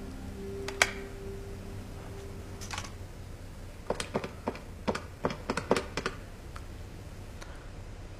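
A low held music note fades out over the first few seconds, with a single click near one second. Then comes a quick run of about ten sharp key clicks over two and a half seconds as a number is dialled on a desk phone's keypad.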